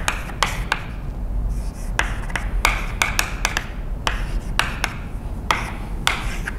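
Chalk writing on a blackboard: irregular short taps and scratchy strokes of the chalk, a dozen or so in the six seconds, over a steady low room rumble.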